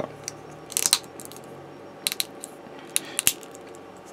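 Small plastic model-kit parts clicking as they are handled and pressed together, a few sharp clicks in small clusters about one, two and three seconds in.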